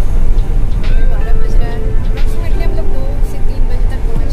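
Low, steady rumble of a car's engine and tyres heard inside the cabin while driving, with a woman's voice and background music over it.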